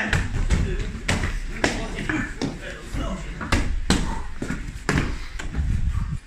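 Repeated heel kicks from the floor into a handheld foam kick shield: a run of thuds about two a second, some harder than others.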